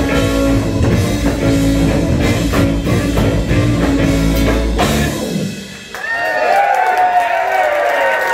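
Rock band playing live with electric guitar, bass balalaika, keyboard and drum kit, ending the song on a final hit about five seconds in. After a short gap the audience cheers and whoops.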